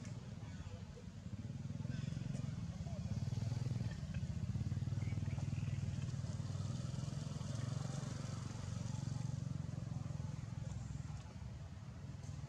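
A steady, low engine drone, like a motor vehicle running nearby. It grows louder about two seconds in and eases off again near the end.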